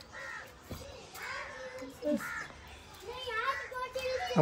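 Crows cawing in the background: a few short caws roughly a second apart, fairly faint.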